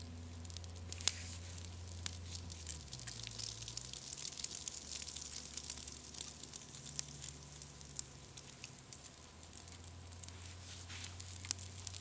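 Small wood campfire crackling with many irregular sharp pops, and fish fillets starting to sizzle on a pop can set over the flames.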